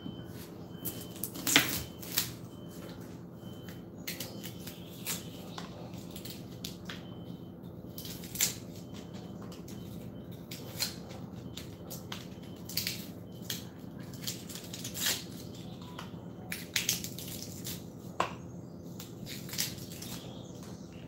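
Irregular sharp clicks and light knocks from food preparation at a kitchen counter, over a steady low hum.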